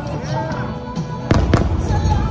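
Two distant aerial fireworks bangs a little past halfway, about a quarter second apart, each followed by a low rumble, with music playing throughout.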